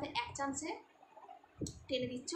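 A woman speaking in Bengali, with a short pause in the middle.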